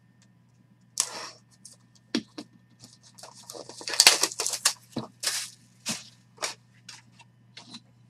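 A sealed trading-card hobby box being torn open by hand: an irregular run of crackles, rips and clicks from its packaging and cardboard, loudest about four seconds in.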